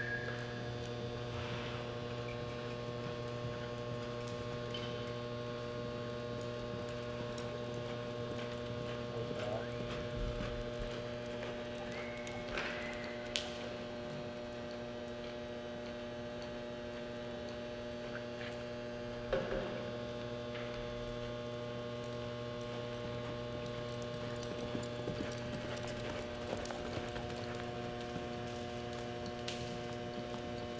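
Steady electrical mains hum made of several constant tones. Under it are faint hoofbeats of a horse loping and circling on arena dirt, with two sharper clicks about midway.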